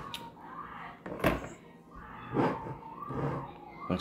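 A few separate clunks as metal kitchen tongs and a stainless steel frying pan are set down on a cutting board, the loudest about a second in.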